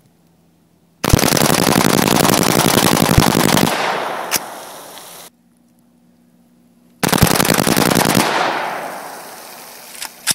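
Smith & Wesson AR-15 rifle bump-fired with a bumpstock: a rapid burst of shots lasting nearly three seconds starts about a second in. A second, shorter burst comes about seven seconds in. Each burst trails off in a fading echo.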